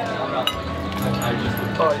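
Two light clinks, about half a second apart, like crockery being knocked, over steady background music.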